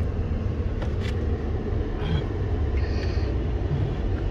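Steady low rumble of a car moving, engine and road noise heard from inside the cabin, with a few faint clicks.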